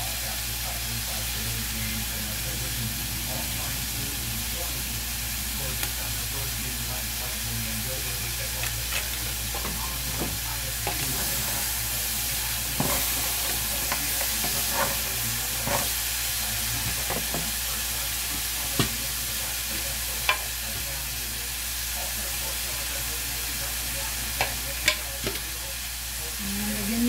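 Crabs sizzling steadily as they fry in a nonstick pan. Scattered sharp clicks come through the middle and near the end as they are stirred.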